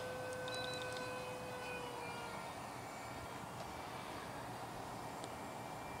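Faint, steady whine of a distant RC F-18 Hornet's electric ducted fan, sliding slightly lower in pitch about two seconds in, over a steady hiss of wind on the microphone.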